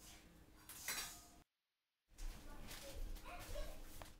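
Knocks and rustles of things being handled, with faint voices, broken about a third of the way in by half a second of dead silence.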